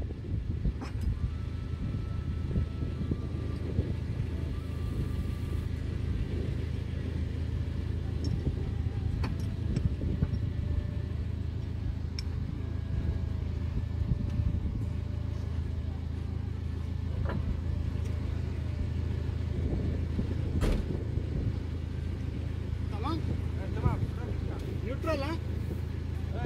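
A vehicle engine idling steadily, with a few sharp clicks and low voices toward the end.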